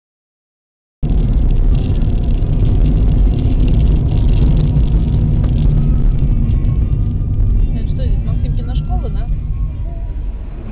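After about a second of dead silence, a car's low, steady road and engine rumble as heard inside the cabin from a windscreen dashcam while driving along a street. It eases off a little near the end, with a few faint voice sounds.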